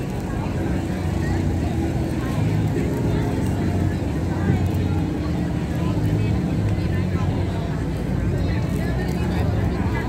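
Crowd chatter from many passers-by on a busy street, over a steady low rumble.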